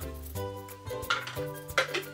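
Soft background music with held, steady tones. A few light clicks and rattles come from a plastic bottle of gummy vitamins being handled and opened.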